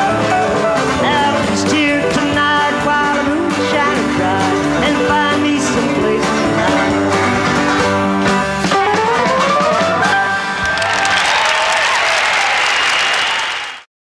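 Live country band with banjo playing the instrumental close of a song, with one instrument gliding upward in pitch about nine seconds in as the tune ends. Audience applause fills the last few seconds, then the sound cuts off abruptly.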